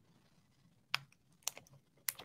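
Two short, sharp clicks at a computer, about half a second apart, as the host works at the keyboard and mouse. The rest is quiet.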